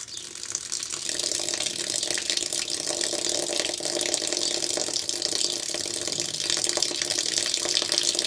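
Hot water running from a small valve outlet on a copper pipe fed by a solar batch water heater's tank, splashing steadily as a stream; the flow builds up over the first second and then holds steady.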